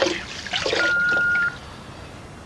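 Kitchen tap running water into a glass for about a second, a steady ringing tone over the rush, then turned off sharply about one and a half seconds in.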